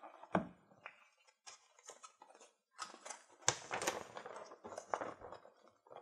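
Handling noise from a cardboard card-game deck box being slid open and its folded paper insert pulled out: scattered light scrapes and taps, then a longer stretch of paper rustling about three seconds in as the sheet is unfolded.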